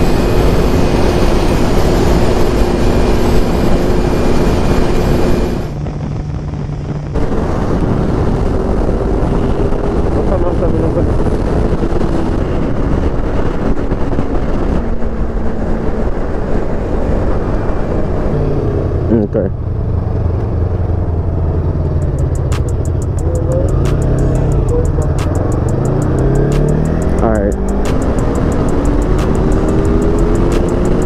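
Sport motorcycle running at freeway speed, heard through loud wind rush on an on-bike camera microphone, with a steady engine hum. The sound drops briefly about six seconds in, and in the second half the engine pitch rises and falls several times as the revs change.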